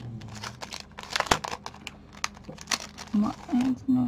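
Clear plastic packaging bag crinkling as a card is handled and slid out of it, a run of sharp crackles, the loudest a little over a second in.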